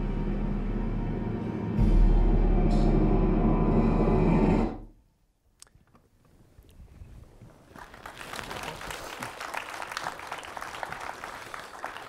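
Ominous film score with a deep, steady low drone, cutting off abruptly about five seconds in. After a brief near-silence, audience applause builds and carries on to the end.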